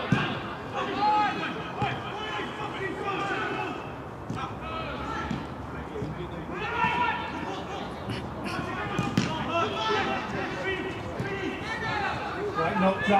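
Players' shouts and spectator voices carrying across an outdoor football pitch, with the thud of the ball being kicked right at the start and again about nine seconds in.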